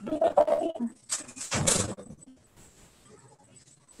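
A dog barking a few times in quick succession, picked up through a participant's open microphone on a video call.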